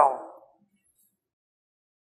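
A man's voice ending a word, falling away within half a second, then dead silence.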